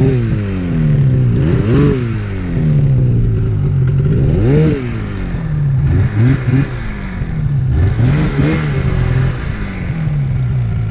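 Polaris Axys 800 two-stroke snowmobile engine running at low revs, blipped up and dropping back four times, about two, five, six and eight and a half seconds in.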